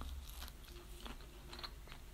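Faint chewing of a mouthful of breaded jackfruit burger, with a few soft clicks.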